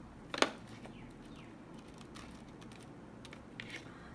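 One sharp plastic click about half a second in, then a few faint clicks and taps: an oil pastel in its plastic holder being handled at the pastel box as one colour is put back and the next picked out.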